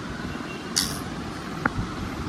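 Steady machine-like background noise, with a short hiss about a second in and a single click near the end.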